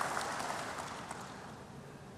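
Audience applause dying away, growing steadily quieter until it has nearly faded out near the end.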